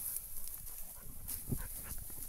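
Small Munsterlander hunting dog nosing through dense dry grass close by, with rustling and the dog's own soft sounds, and a short soft knock about one and a half seconds in.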